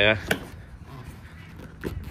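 Two short sharp clicks, one just after the start and one near the end, from the rear seat of a 2019 Kawasaki Ultra LX jet ski as it is unlatched and popped up, with faint handling noise between them.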